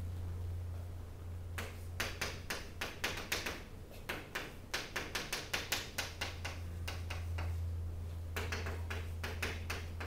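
Chalk writing on a chalkboard: a quick run of sharp taps and short scrapes as words are written, starting about a second and a half in, pausing for about a second near the eight-second mark, then resuming. A steady low hum runs underneath.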